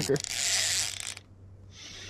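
BFS baitcasting fishing reel under load from a large hooked fish, giving a fast mechanical ratcheting buzz. It is loudest in the first second, drops away, then builds again near the end.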